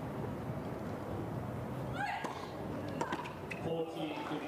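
A tennis serve on a hard court: the server gives a short pitched grunt as she strikes the ball about halfway through, followed by a couple of sharp ball strikes and bounces over a low murmur from the stands.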